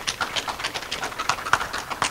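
Audience applauding, with individual hand claps heard distinctly in a quick, irregular patter.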